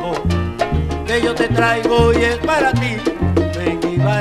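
A 1970s salsa band plays an instrumental passage between sung lines. A bass line of held, changing notes runs under rhythmic percussion, with pitched melody lines above.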